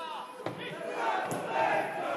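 Football supporters in the stands shouting together as a crowd, the mass of voices swelling about halfway in, with a single sharp knock just before it rises.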